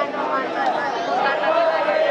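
Crowd chatter: many marchers talking at once, several voices overlapping with no single voice standing out.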